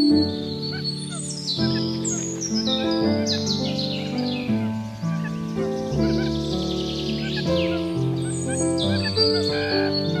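Songbirds singing over soft instrumental music of long held notes: many quick high chirps and falling whistles, busiest from about a second in to the middle and again near the end.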